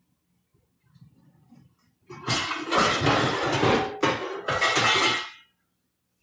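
Metal pots and pans clattering as a frying pan is pulled out from among them, in two loud bursts of over a second each in the second half.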